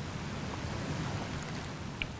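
Steady room tone picked up through the lecture microphone: an even hiss with a low rumble underneath, and no distinct events.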